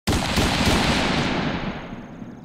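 Intro sound effect: a sudden loud, crackling explosion-like hit that starts abruptly and fades away over about two seconds.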